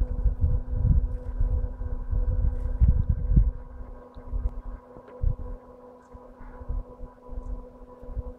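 Wind buffeting the microphone in low rumbling gusts, strongest in the first three seconds and weaker after, over a faint steady hum.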